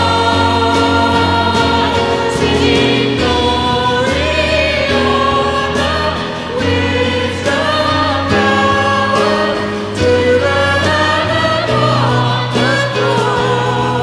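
Live worship song in a church: a woman singing lead into a microphone with a guitar band, sustained bass notes changing every second or two, and many voices singing along.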